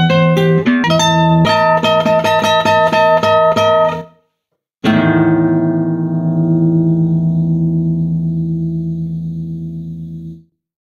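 Solo classical guitar playing a quick passage of plucked notes that breaks off into a brief silence about four seconds in. Then a single chord is struck and left to ring, fading slowly away.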